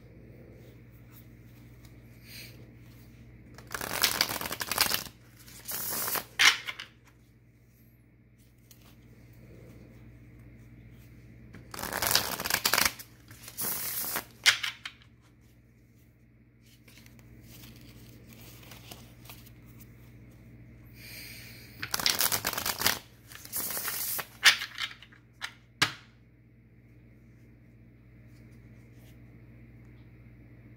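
A tarot deck being shuffled by hand in three bouts of a few seconds each, with pauses between them.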